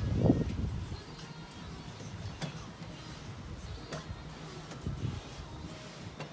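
Automatic pool cover mechanism running with a steady low hum as the cover is drawn out across the pool, with a few faint clicks. A louder low rumble comes in the first second.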